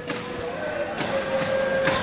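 Volleyball rally in an indoor hall: three sharp slaps of hands on the ball, about a second apart, over a steady background hum of the arena.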